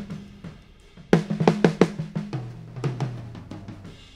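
Multitrack tape playback of a Gretsch drum kit through studio monitors, with the snare top and bottom mic channels soloed. About a second in comes a quick flurry of snare strokes with a ringing drum tone, followed by a lower drum tone that keeps ringing.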